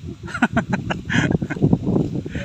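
Ducks quacking: a quick run of short calls, then a louder call a little past halfway.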